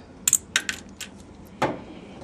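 Small sharp clicks and taps as the cap is pried off a glass medication vial with an alcohol swab on a stainless-steel work surface. There are several light clicks in the first second, and the loudest click comes about one and a half seconds in.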